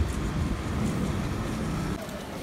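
Steady low rumble of outdoor street traffic.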